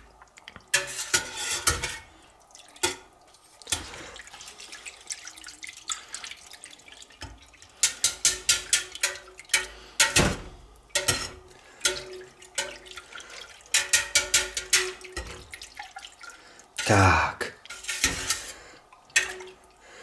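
Wire balloon whisk working through fresh cow's-milk curd in a stainless steel pot: wet sloshing of curd and whey, with the whisk wires clicking against the pot in irregular runs. The curd is being broken up into small pieces so that the whey separates out.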